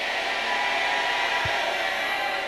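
A congregation applauding steadily, with a few voices sustained over the clapping.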